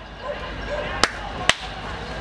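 Two sharp hand claps close to the microphone, about half a second apart.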